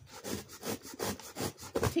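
Repeated scraping strokes on a cardboard shipping box, about three a second, as the box is worked open.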